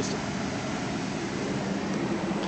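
Steady rush of air from the climate-control fan in the cabin of a 2008 Cadillac Escalade ESV.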